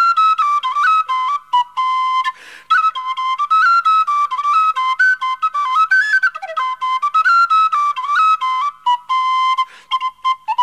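Irish traditional polka played solo on a tin whistle, a quick stepping melody of short notes in a high register, with a brief pause for breath about two and a half seconds in.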